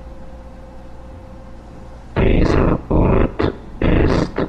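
Harsh growls in four or five loud bursts, the first about halfway through, breaking in over a faint steady hum.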